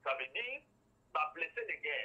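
A man talking in two short phrases with a pause of about half a second between them, his voice thin like speech over a telephone line.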